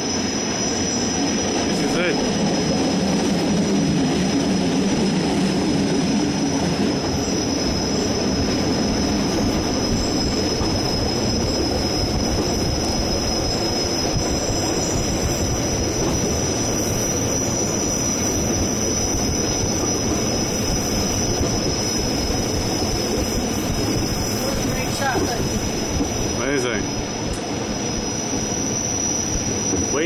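Bernina Express train running on the rails, a steady rumble of wheels and carriage heard from inside a coach, with a high, steady whine throughout.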